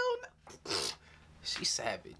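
A man's short wordless vocal exclamations: a few breathy calls with quiet gaps between them, as the music stops.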